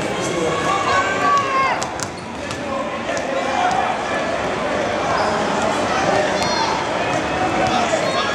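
Basketballs bouncing on a hardwood court, with sharp scattered thuds, under the steady chatter of many voices from players and the crowd in a large indoor arena.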